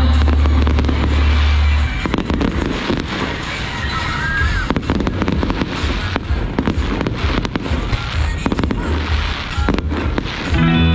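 Loud music with a heavy bass plays for about the first two seconds, then stops. Fireworks take over, crackling and banging in rapid, dense volleys for the rest of the time.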